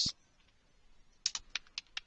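Computer keyboard typing: a quick run of about six keystrokes, starting a little over a second in.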